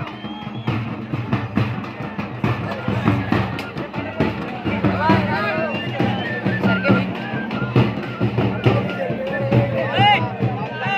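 Large double-headed drums beaten with curved sticks, with the voices of a crowd mixed in.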